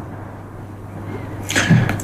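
A pause in a man's speech: low studio room tone with a steady low hum, then a short breathy hiss about one and a half seconds in, just before his voice starts again at the very end.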